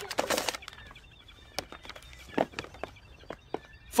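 Rummaging through a cardboard box of paper leaflets: a quick burst of rustling and light clatter at the start, then scattered single clicks and short paper rustles.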